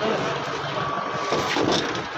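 Ambulance engine running with a steady noise, and a short high beep of about half a second just under a second in.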